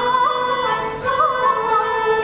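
Peking opera singing: a high voice gliding and ornamenting between held notes, with musical accompaniment.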